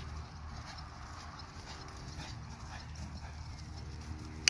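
Quarter pony's hooves thudding softly on grass turf at a canter, over a steady low rumble.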